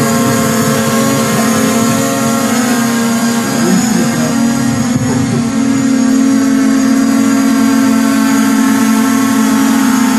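Small quadcopter drone hovering, its propellers giving a loud, steady buzz that wavers slightly in pitch.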